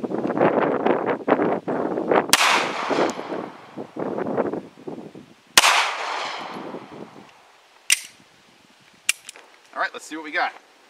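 Two 9 mm handgun shots about three seconds apart, each with a long echo trailing off, the second the louder, followed by two short sharp clicks.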